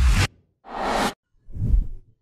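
Whoosh sound effects for an animated logo reveal: three short swells of rushing noise, one after another.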